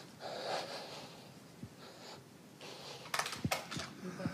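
Handling noise from a live handheld microphone as it is carried across the room: faint rustles and breaths, then a few short, sharp knocks about three seconds in as it is held out.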